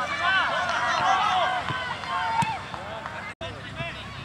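Several children's voices shouting and calling out at once, high-pitched and overlapping, for the first two and a half seconds, then quieter. The sound cuts out for an instant a little after three seconds in.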